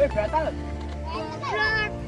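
Children's voices over background music.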